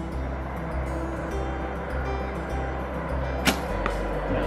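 A traditional bow is shot once about three and a half seconds in, a sharp snap of the string on release, with a fainter click just after. Background music with steady bass notes plays throughout.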